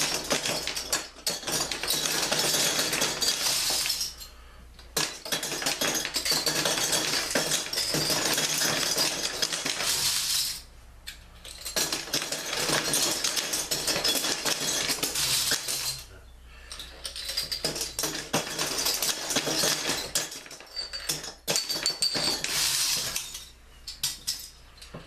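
Metal bottle caps clattering and clinking as they are fed through the slot in the top of a glass-fronted wooden shadow box and drop onto the pile of caps inside, in four long runs broken by short pauses.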